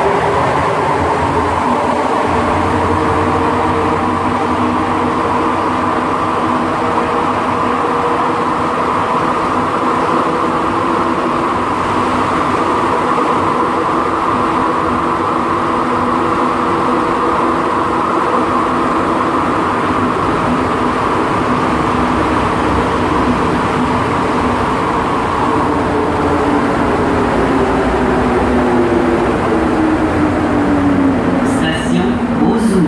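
Montreal Metro Azur (MPM-10) rubber-tyred metro train running between stations, heard from inside the car: a steady running noise with a whine from the traction drive. The whine's pitch holds steady, then starts falling near the end as the train slows for the next station.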